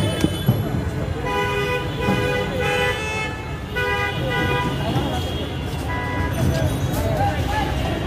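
Vehicle horns honking in busy street traffic: a long blast followed by more, then shorter toots about four and six seconds in, over a steady din of traffic and voices. Two sharp clicks come right at the start.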